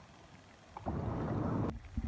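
Wind buffeting a phone microphone: a low, rumbling gust of about a second that starts near the middle and stops abruptly.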